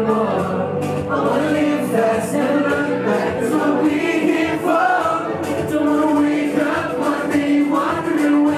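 Live vocal performance: two male singers singing a melody into microphones over a sustained low instrumental backing.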